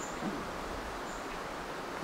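Steady outdoor ambience of a cloud forest, an even hiss of background noise, with a faint short high chirp near the start and another about a second in.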